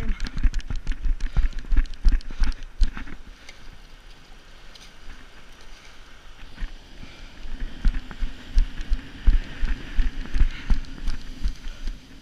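Running footsteps on sand, a quick run of heavy thuds about three a second, which stops about three seconds in and starts again near eight seconds after a quieter stretch.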